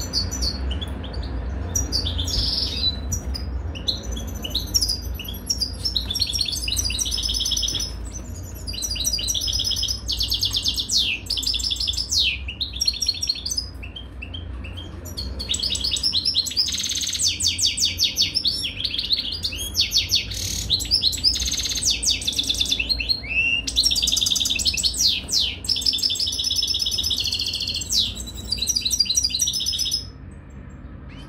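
European goldfinch singing: long runs of fast twittering, trilling song phrases broken by a few short pauses.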